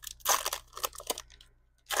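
The foil wrapper of a Donruss football trading-card pack being torn open by hand and crinkling: a cluster of rips and crackles through the first second, then one more short rip near the end.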